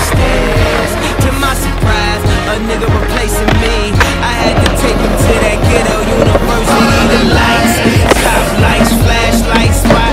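Skateboard sounds over a hip-hop backing track with a steady deep drum beat: wheels rolling on concrete and the board grinding and clacking on ledges, with sharp clicks from the board throughout.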